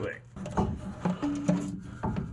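A few light knocks and scrapes as a replacement starter motor is worked up into its mounting spot under the car.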